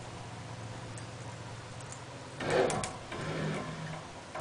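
Battery-powered electric drive motor turning a propeller shaft with a steady low hum, running on a nearly flat 12-volt battery. A brief louder noise comes a little past halfway.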